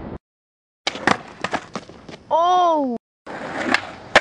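Skateboard knocking and clattering: a run of sharp knocks of board and wheels on hard ground, then a short shout that rises and falls in pitch. After an abrupt cut, more skateboard knocks follow, with one sharp smack near the end.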